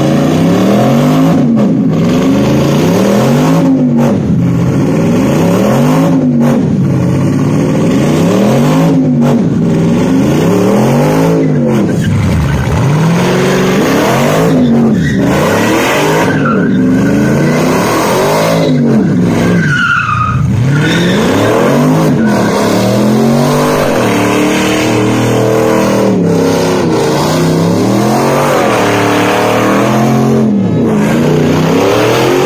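A stripped Mercedes CLS550's V8 engine running at high revs as the car spins donuts, its rear tyres screeching and smoking on the asphalt. The engine note rises and falls in a steady cycle about every two seconds as the car circles.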